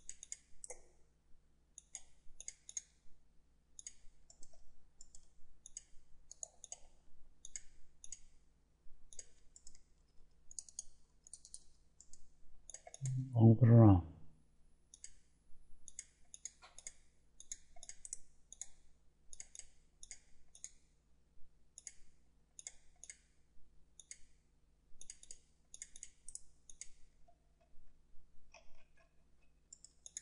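Computer mouse clicking in quick clusters of two or three clicks, over and over. About thirteen seconds in there is a single short voice sound, falling in pitch and lasting about a second, which is the loudest thing heard.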